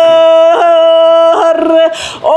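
A woman singing in the Sakha toyuk style, holding long steady notes broken twice by quick catches in the voice, with a short break near the end.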